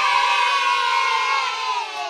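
A crowd of children cheering together in one long sustained shout that begins to fade near the end.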